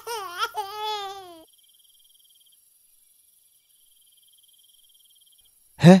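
A newborn baby crying in wavering wails that cut off abruptly about one and a half seconds in. Faint crickets chirping with a thin, high trill follow.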